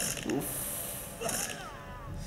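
Action-film sound effects playing from a laptop: short hissing sounds with mechanical clicking, and a falling whistle-like tone near the end.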